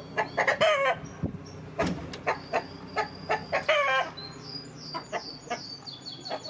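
A flock of Augsburger chickens clucking and calling, with many short calls throughout. The clearest, louder calls come about half a second in and again just before four seconds in.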